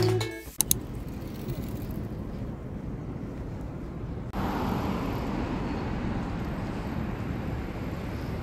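Background music cuts off in the first half second, then steady outdoor street ambience with a distant traffic hiss, which gets louder about four seconds in.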